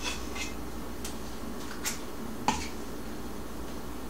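Metal cookie scoop tapping and scraping against the inside of a steel pot of cookie batter: a handful of scattered light clicks, the sharpest about two and a half seconds in, over a steady low hum.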